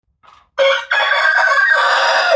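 A rooster crowing: one long crow that starts about half a second in and carries on loud and steady.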